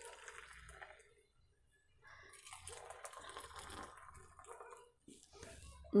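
Hot milky coffee poured between two metal vessels, a faint liquid splashing: briefly at the start, then again for about three seconds from two seconds in.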